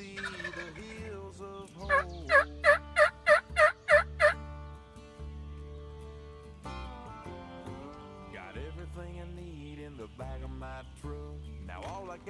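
Wild turkey yelping: a series of about seven evenly spaced yelps, roughly three a second, starting about two seconds in. After it, music carries on.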